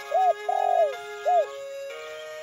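A dove cooing three times, short, longer, short, each coo a rise and fall in pitch, over soft background music with held notes.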